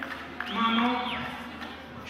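A man singing a slow, wavering melody into a microphone, the voice swelling about half a second in and fading toward the end.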